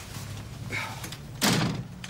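A door shutting with a single thud about one and a half seconds in.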